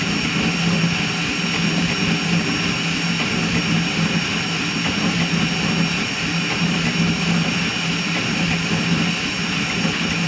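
Crossed-gantry 3D printer running a high-speed print: the toolhead's stepper motors and belts buzzing as it darts back and forth, over the rush of its cooling fans. A steady hum runs under a thin high whine.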